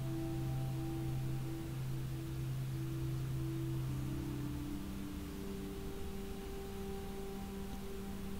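Soft background meditation music of long held tones, moving to a different chord about halfway through.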